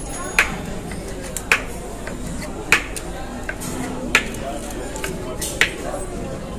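Chef's knife knocking on a wooden cutting board as a grilled steak is sliced, five sharp knocks a little over a second apart, with crowd chatter behind.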